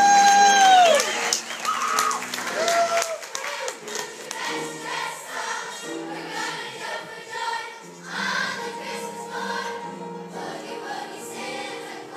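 Children's chorus singing a Christmas boogie-woogie song with accompaniment. A loud held note that bends up and falls away opens it, followed by a shorter one about three seconds in.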